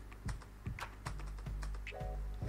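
Typing on a computer keyboard: irregular key clicks, a few a second.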